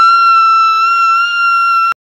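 A woman's voice holding one long, high-pitched squeal at a steady pitch, loud. It cuts off abruptly near the end as the recording stops.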